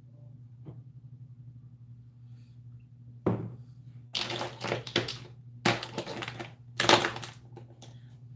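Handling noises as a perfume bottle is examined at a desk: a faint click about a second in, then a run of short knocks and rustles in the second half, over a steady low hum.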